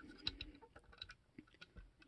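Faint, scattered small clicks and taps of the hood of a 1:50 scale die-cast International LoneStar model truck being tilted open by hand.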